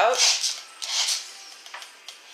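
The last of a spoken word, then two soft rustling scrapes about half a second apart and a faint click near the end: handling noise as a wooden coil-winding jig is held up and turned.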